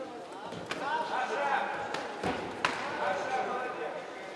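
Raised voices shouting in a sports hall, with three sharp thuds of kickboxing strikes landing, the loudest a little over two and a half seconds in.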